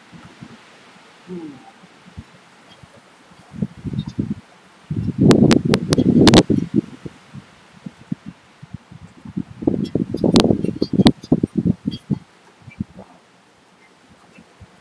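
Two bursts of rustling, crackling noise on the microphone, about five and ten seconds in, over a faint steady background hiss.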